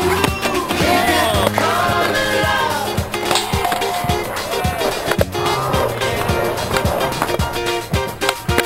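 Music with a steady beat over skateboard sounds: urethane wheels rolling on asphalt and the board knocking against the ground and a flat bar during tricks.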